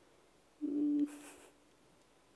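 A short hummed 'mm' in a woman's voice, held on one pitch for about half a second, then a breath.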